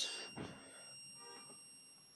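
A steady high-pitched electronic tone of about 2500 Hz, with fainter higher tones above it, played through a phone's speaker. It is the Drawdio oscillator's tone, sent over FM radio by a 32 MHz crystal oscillator and picked up by the phone tuned to 96 MHz.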